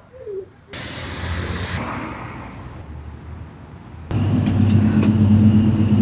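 A car passing on the street, its road noise swelling and fading over about three seconds. About four seconds in, a loud steady low mechanical hum starts abruptly.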